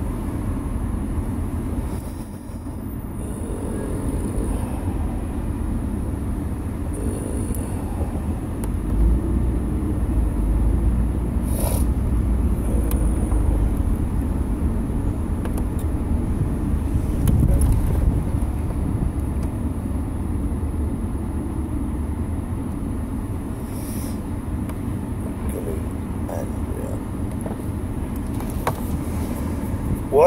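Car cabin noise while driving: a steady low rumble of road and engine, swelling for a while midway, with a couple of faint clicks.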